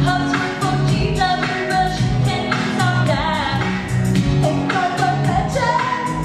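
A stage cast singing a pop-style comic song over accompaniment with a steady, pulsing bass line.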